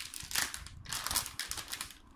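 Metallic anti-static bag holding a laptop RAM module crinkling as it is handled, in several bursts.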